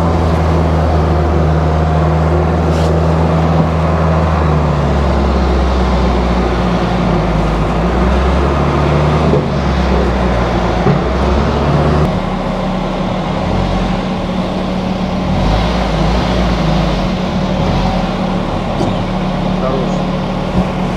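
UAZ-452 'Bukhanka' van engine running at low speed as the van is driven slowly and manoeuvred, a steady low engine note that shifts about twelve seconds in.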